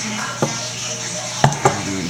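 Hand crimping tool squeezing a copper crimp ring onto a brass manifold fitting, giving three sharp metal clicks: one about half a second in and two close together about a second later.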